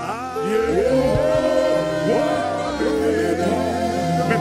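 Gospel worship music: several voices singing together in sustained, gliding notes over a band with steady bass notes, swelling louder about half a second in.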